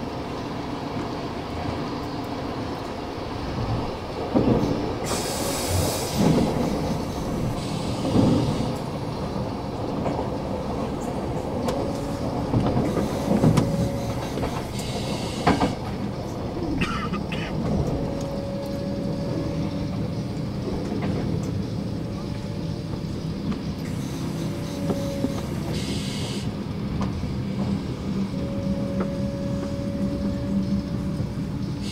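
An S-Bahn train heard from inside the carriage, running on the rails with knocks and rattles from the wheels over the track. In the second half a thin wheel squeal comes and goes as the train runs into the station.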